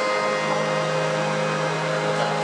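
A steady accompaniment drone of held notes sounding on its own while the singer pauses, its lower notes shifting slightly about halfway through.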